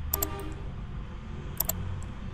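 Two sharp clicks at a computer, about a second and a half apart, each a quick double tick, over a low steady hum.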